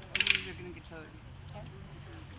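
A quick rattle of several small clinks near the start, followed by faint voices over a low steady hum.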